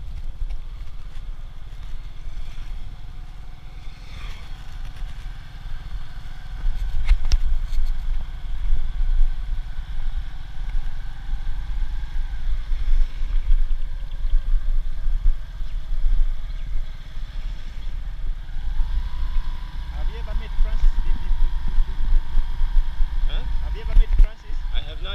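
A boda-boda motorcycle riding along a dirt road, heard from on board. Heavy wind buffeting on the microphone covers the small engine's steady running. The wind grows louder about six seconds in as the bike picks up speed.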